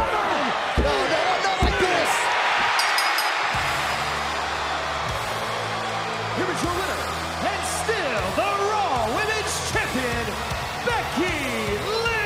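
A referee's hand slapping the wrestling ring mat for the last beats of a pinfall count, a few thuds under a shouting arena crowd. About three and a half seconds in, the winning champion's entrance music starts and plays under the crowd noise.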